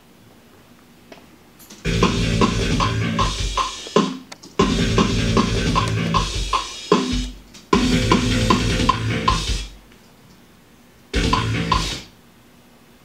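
Metal band recording played back in short stop-start sections: drum kit with bass and guitar, four times cutting off abruptly and starting again, with a steady tick about two and a half times a second.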